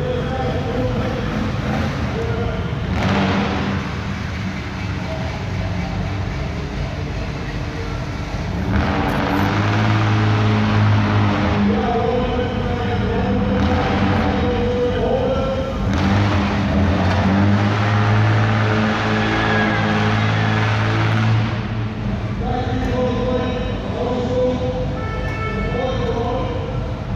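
Loud music with a voice plays over a hall PA system, mixed with the engines of lowrider cars driving and three-wheeling on the arena floor. The engine noise swells several times.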